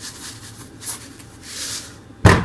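Salt being tipped from a metal spoon into a plastic container, with a few soft, hissy swishes and light scraping.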